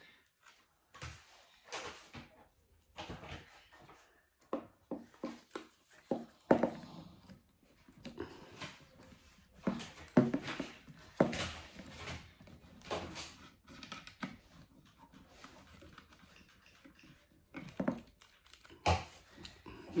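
Irregular plastic clicks, taps and rattles from handling a shotgun microphone and fitting it onto the top of an LED light on a mini tripod mount.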